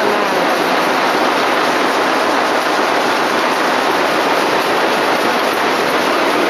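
Steady mechanical noise of automatic silk-reeling machinery running, a continuous dense din with no distinct beat.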